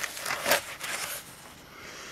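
Paper rustling and crackling as a printed instruction sheet is handled, with a few short crackles in the first second or so.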